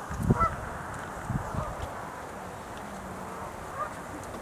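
Faint, brief calls of sandhill cranes, one about half a second in and another near the end, over a steady background hiss.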